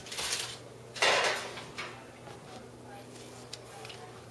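Stainless steel pot and foil being handled: a brief rustle, then a louder metallic clatter about a second in, followed by a few light knocks.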